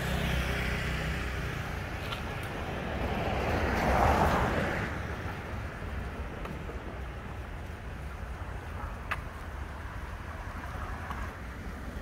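Street traffic: a low engine hum at first, then a vehicle passing, its noise swelling to a peak about four seconds in and fading away. Quiet street background follows.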